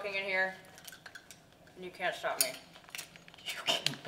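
A short murmured voice sound at the start, then a few light clicks and clinks with more brief, soft voice sounds.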